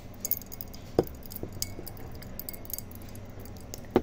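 Popping candy crackling in water: scattered small pops and ticks, with two sharper clicks, one about a second in and one near the end.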